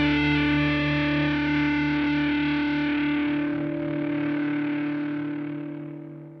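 Distorted electric guitar chord held and left ringing as the closing chord of a punk song, slowly dying away and fading out near the end.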